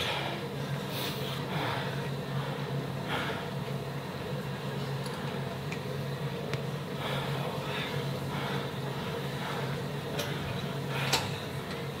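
Gym room ambience: a steady low hum with a few faint scattered clicks and knocks.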